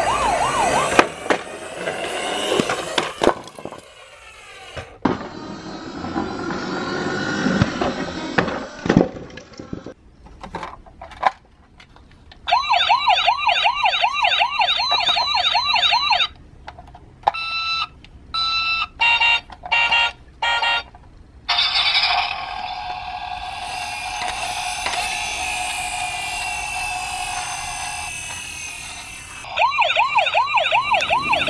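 Electronic siren sound effects from battery-powered toy police cars. A fast warbling siren is followed by a run of short on-off tones and then a long, steadier wail, with plastic clicks and handling noise between them. The warbling siren starts again right at the end.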